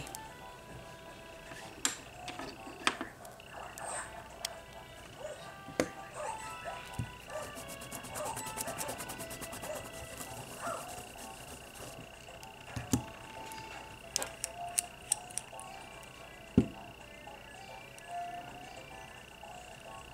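Nail-stamping tools handled on a metal stamping plate: scattered clicks and taps, with a stretch of rapid ticking about seven to ten seconds in. A steady high whine sets in about six seconds in.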